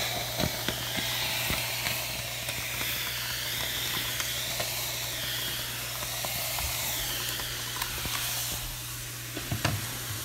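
Steam iron on its steam setting hissing steadily as steam is blown onto a pinned crochet doily to block it and relax the fibres; the hiss eases off about two seconds before the end.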